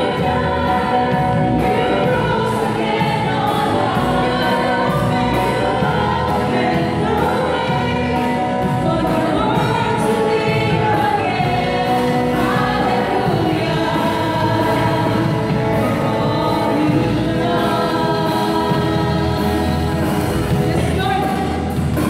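Live worship song: a woman singing into a handheld microphone through the PA, over accompaniment with a steady beat, sounding like several voices together.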